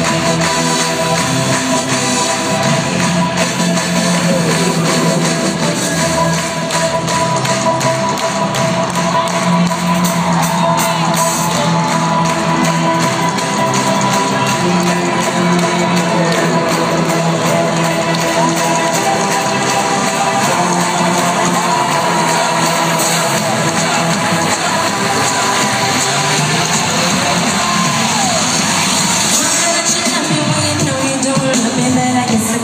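Loud amplified concert music in an arena, heard from among the audience: an instrumental passage of held chords over a steady pulse, with no lead vocal.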